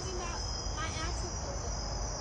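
Crickets chirping in a steady, high-pitched chorus.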